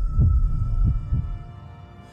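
Heartbeat sound effect in a documentary soundtrack: two low double thuds under a faint held tone, fading away.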